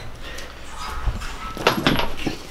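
Footsteps and handling knocks from a handheld camera being carried, with a low rumble behind them.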